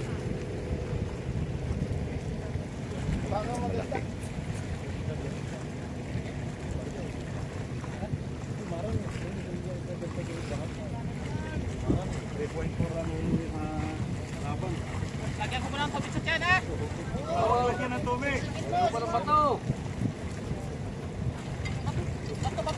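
Wind rumbling on the microphone over small waves washing against shore rocks, with distant voices calling out in the later part.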